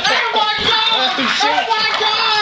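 Several people's voices shouting and yelling excitedly at once, overlapping without a break.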